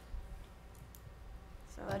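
A few faint clicks and taps from a pen writing on paper at a desk microphone, over a low steady room hum. A man starts speaking near the end.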